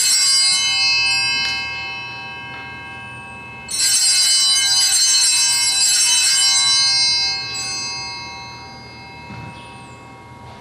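Sanctus (altar) bells rung to mark the elevation of the chalice at the consecration: a short peal right at the start that dies away, then a longer, steadily shaken peal from about four to seven seconds in that fades out.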